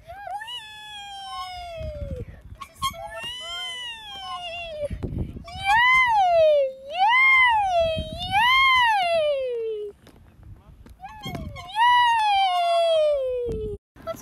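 A high-pitched voice wailing in long, drawn-out cries that rise and fall in pitch, several in a row with short pauses between them, and low rumbles in the gaps.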